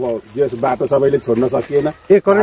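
A man speaking, with short phrases and brief pauses.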